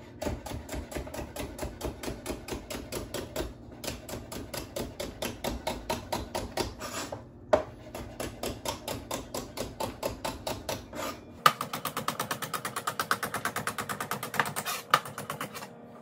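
Kitchen knife chopping rhubarb stalks into thin slices on a plastic cutting board: quick, even knocks of the blade on the board at about four or five a second, with two brief pauses, then faster for the last few seconds.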